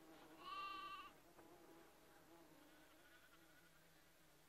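A lamb gives one short, faint bleat about half a second in; otherwise near silence.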